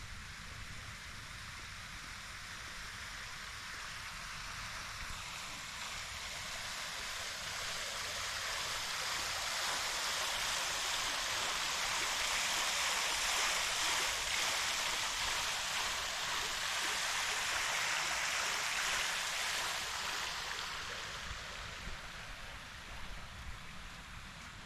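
Water splashing in a round stone courtyard fountain, growing louder as it is approached, loudest in the middle and fading away near the end.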